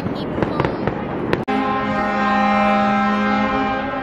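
Fireworks popping and crackling. About a second and a half in, the sound breaks off abruptly and a steady held chord of music takes over.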